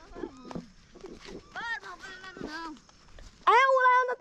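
Children's voices: faint shouts in the middle, then a loud, drawn-out call near the end.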